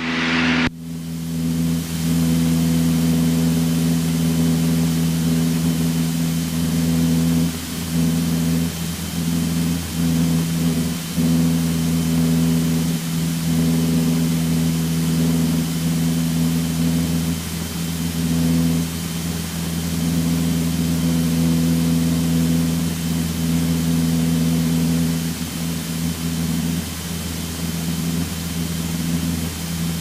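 Single-engine light aircraft's piston engine and propeller droning steadily at climb power just after take-off, heard from inside the cockpit. A faint steady high whine sits above the drone.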